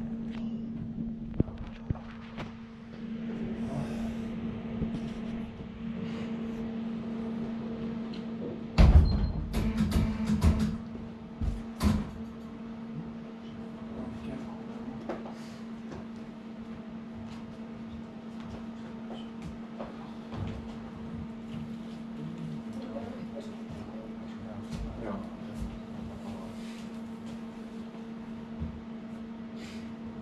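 Steady low electrical hum, with a cluster of loud knocks and rattles about nine to twelve seconds in as the camera is handled and moved.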